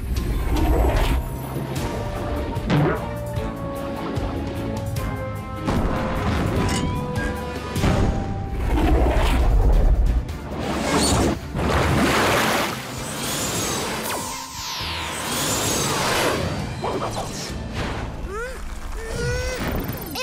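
Action music from a cartoon score with sound effects over it: sudden crashes and booms and a falling whoosh about two thirds of the way through.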